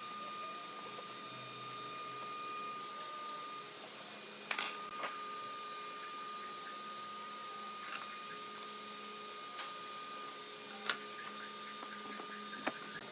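Light clicks and knocks of hand tools and pine boards being handled on a wooden workbench, a few seconds apart, over a steady faint hum with a thin high whine.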